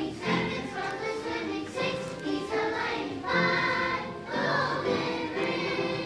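Children's choir singing a song together with accompanying music.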